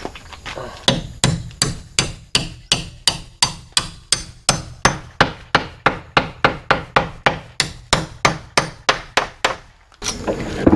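Claw hammer striking a timber post-and-beam joint in steady, even blows, about three a second, starting about a second in and stopping just before the end.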